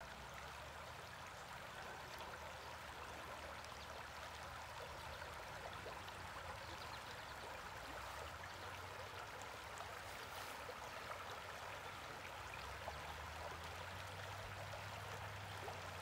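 Shallow river water running over a stony bed: a faint, steady babble of flowing water.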